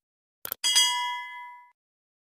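Subscribe-button sound effect: two quick mouse clicks about half a second in, then a notification bell ding that rings out and fades over about a second.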